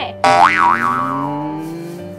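A comic 'boing' sound effect laid over background music. It starts suddenly a moment in, its pitch swoops up and down twice, then it settles into a long note that slowly rises in pitch as it fades away.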